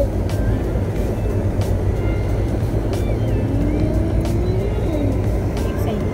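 A car's engine and tyres giving a steady low road rumble, heard from inside the moving car.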